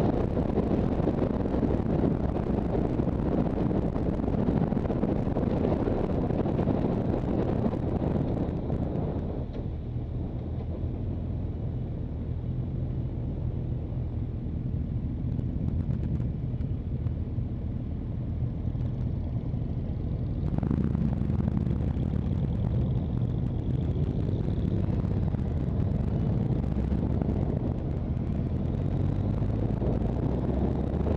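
Motorcycle riding with wind rushing over the camera microphone on top of engine and road rumble. The noise eases off about a third of the way in as the bike slows for a junction, then jumps back up about two-thirds in as it speeds away.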